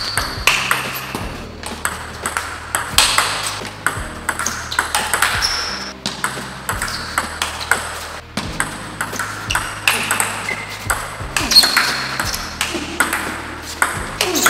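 Table tennis rally: quick, sharp clicks of the celluloid-style plastic ball off the bats and bouncing on the table, at an uneven rhythm of several hits a second. One player returns the ball with a long-pimpled rubber with no sponge.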